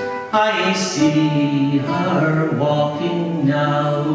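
A man's voice singing a slow Irish song in long held notes, with plucked-string accompaniment.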